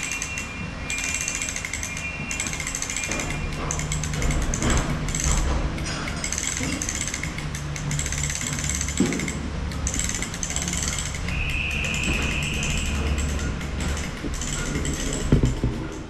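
Steady mechanical rattling over a low hum, with a brief high-pitched hiss near the end.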